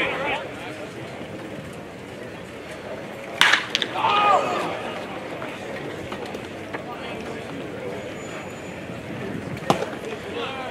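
Ballfield ambience during a baseball game: steady outdoor background with a sharp knock about three and a half seconds in, followed by a short shouted call, and another brief click near the end.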